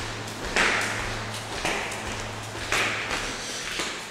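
Footsteps on a tile floor, about one a second, over a steady low hum.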